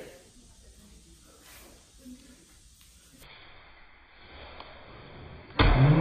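Faint room noise, then near the end a sudden thump as a kick strikes the hand holding a plastic drink bottle, followed at once by a loud, drawn-out "ooh!" that rises in pitch and then holds.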